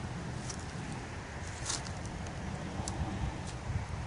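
Hands digging through loose wood-chip mulch and soil, giving a few soft scattered rustles and crackles over a steady low rumble.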